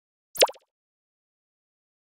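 A single short pop-like sound effect with a quick pitch sweep, about half a second in.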